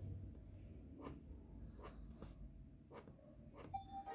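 Faint scratching of a Micron 003 fineliner pen drawing short hatching strokes on a sketch card, with a few light ticks of the pen tip on the card. A steady musical note comes in just before the end.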